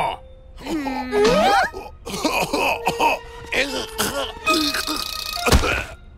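Wordless cartoon-character vocal sounds, gliding up and down in pitch, over background music, then a single heavy thud near the end as the character falls flat on the floor.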